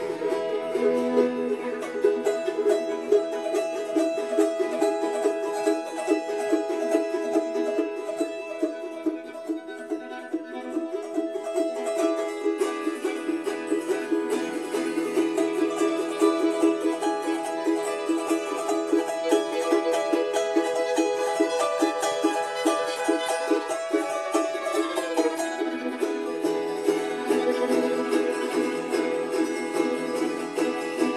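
Instrumental folk music with fast-picked plucked string instruments playing a steady run of notes.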